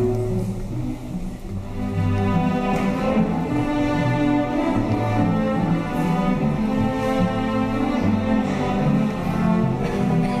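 String orchestra playing, with the cellos carrying long held low notes. The music dips briefly about a second in, then swells back.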